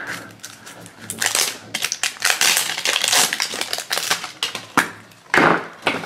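Plastic packaging of a Crack'Ems toy egg crinkling and crackling as it is handled and peeled off, in quick irregular clicks and rustles.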